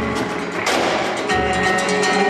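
Live music from a small band with guitar and percussion: held notes with a sharp accented strike less than a second in and low drum thumps.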